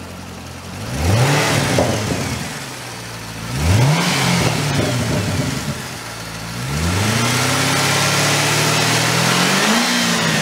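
A 2013 Chevrolet Corvette's 6.2-litre LS3 V8 idling, then revved three times: two quick blips about a second in and near four seconds, then a longer rev held for about three seconds that drops back toward idle near the end.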